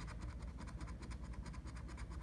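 A coin scraping the coating off a paper scratch-off lottery ticket in quick, rapid back-and-forth strokes.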